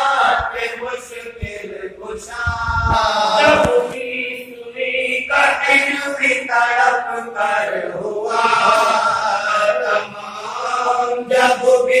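Men chanting a marsiya, an Urdu elegy, in unaccompanied melodic recitation: a lead reciter at the microphone with supporting male voices joining him in long, held phrases.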